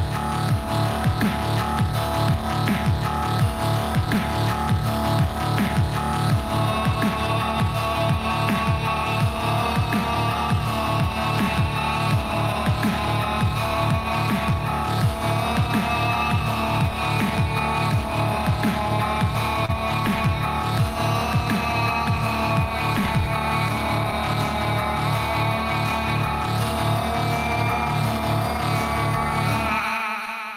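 Live loopstation beatbox performance: layered vocal loops of beatboxed drums and a heavy dubstep-style bass beat, all made by voice. A sung vocal melody line joins about seven seconds in.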